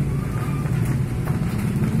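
A steady low engine hum, like a motor running at idle close by.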